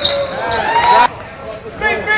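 Sounds of a basketball game in a gym: sneakers squeaking on the court and players' voices. They cut off abruptly about a second in.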